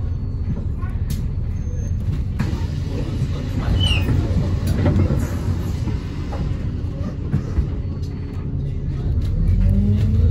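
City bus diesel engine idling steadily at a stop, with clunks and a hiss of air around the middle as the doors work. Near the end the engine note rises as the bus pulls away.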